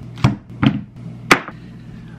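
Vegetables set down one after another on a kitchen countertop: a half red cabbage, a bell pepper and a cucumber make three short knocks within about a second and a half, the last the loudest, over a steady low hum.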